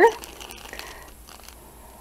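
Faint rustling with a few light clicks as things are handled in a cardboard box, including a clear plastic bag being lifted out; the tail of a spoken word is heard at the very start.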